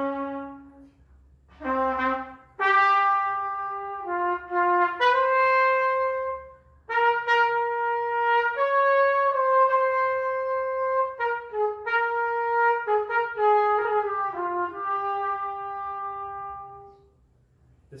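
A solo trumpet, unaccompanied, plays a slow melody of held and connected notes. It stops about a second before the end.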